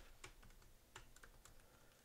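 Faint keystrokes on a computer keyboard: a few light, irregular clicks as a line of code is typed.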